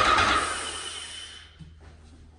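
Graco 390 PC airless paint sprayer hissing as paint is forced through at its low pressure setting; the hiss fades away over about a second and a half.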